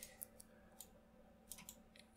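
Near silence, broken by a handful of faint, short clicks from a computer mouse as it is clicked and dragged.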